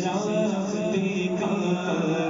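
A solo voice chanting an Urdu Islamic devotional song, with long, sliding held notes.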